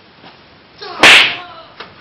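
One sudden, very loud crack about a second in, so loud that it distorts, with a short echo after it.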